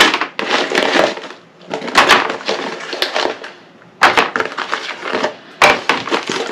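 Hot-melt glue sticks clattering against each other and a plastic container as they are handled and sorted, in several short rattling bursts with brief pauses between.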